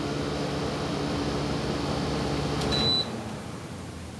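Window air conditioner running with a steady hum, then a short high electronic beep near the end and the hum cuts off suddenly: the unit being switched off.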